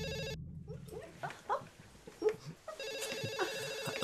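Cordless home telephone ringing with an electronic tone of steady pitch. One ring cuts off just after the start and the next begins about two and a half seconds later. In the gap between them come a few short, rising squeaky sounds.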